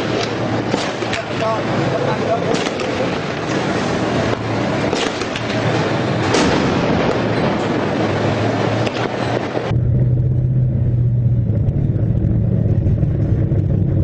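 Tank engine and running gear, a loud noisy rumble with scattered sharp clatter. About ten seconds in it cuts abruptly to a steady low engine drone.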